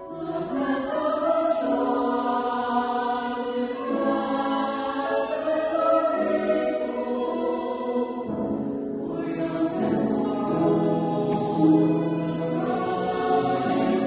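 Mixed college choir of men's and women's voices singing a hymn in parts, sustained chords, with lower parts coming in a little past eight seconds.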